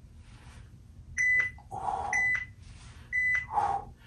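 Workout interval timer beeping three times, one second apart, counting down the last seconds of the exercise. Between the beeps come a man's breaths as he holds a push-up position.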